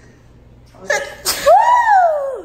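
A person's sudden loud vocal outburst about a second in: a sharp burst of breath, then a long voiced cry that rises and then falls in pitch.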